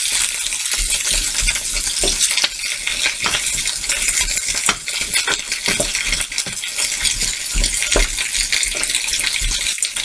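Chicken pieces, onions and garlic sizzling in hot oil in a frying pan, browning, with a wooden spoon stirring them and knocking and scraping against the pan now and then.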